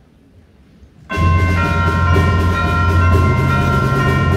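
School concert band coming in together about a second in, loud, with brass and low winds holding full sustained chords that shift pitch as the passage moves on.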